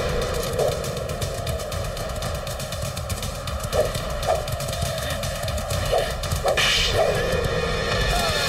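Action-film sound mix of a horse at a gallop: a continuous rumble of hoofbeats with whip-like cracks, and a sudden rushing burst about six and a half seconds in.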